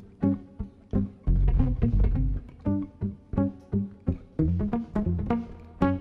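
Live jazz from a guitar, keyboard and drum trio playing an odd-meter tune, with short plucked low notes in a choppy, stop-start rhythm.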